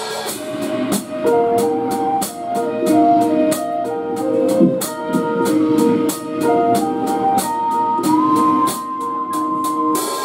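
Live band playing the instrumental intro of a rock song: a drum kit keeps a steady beat of about four hits a second under electric guitars and a sustained melody line, with one long note held near the end.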